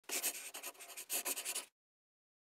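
Scratchy strokes like a pen writing fast on paper, in two quick runs that cut off sharply about two thirds of the way in.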